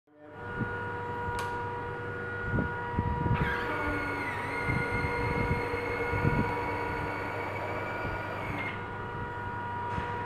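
Electric 95-degree rotating retracts of a P-40 RC model lowering the main gear: the retract motors whine steadily for about five seconds, starting about three seconds in, with a few dull knocks around them.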